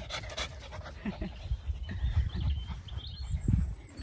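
A dog panting close by, with wind rumbling on the microphone.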